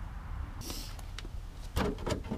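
Handling noise: a brief rustle about half a second in, a few sharp clicks, and a louder knock with rustling near the end, over a steady low rumble.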